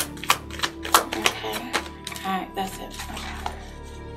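A deck of tarot cards being shuffled by hand: a quick run of sharp clicks and slaps in the first two seconds, thinning out toward the end, over soft background music.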